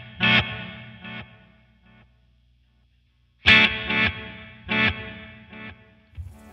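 Electric guitar chords strummed through a Flamma FS03 delay pedal on its Mod-verse setting, each chord cut short and followed by a few fading, modulated repeats. The first chord's echoes die away within about two seconds, and a second chord comes about three and a half seconds in, trailing off the same way.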